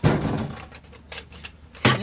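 A burst of rustling, scuffling noise at the start, then a single sharp, loud thump shortly before the end.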